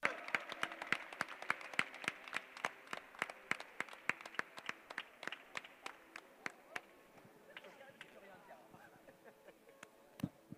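Audience applauding, a patter of separate hand claps that thins out and fades away over the last few seconds.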